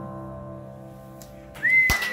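The last chord on a Yamaha stage keyboard sustains and fades away, then about one and a half seconds in the audience breaks into applause, with a loud sliding whistle from one listener.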